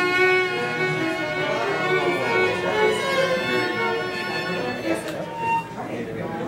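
Solo violin playing a held bowed note with vibrato, the finger rocking from the knuckle and the vibrato speeding up from slow to fast; further notes follow in the second half.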